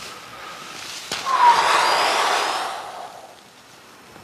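A sudden loud rushing noise that starts with a click about a second in, swells, then fades away over about two seconds.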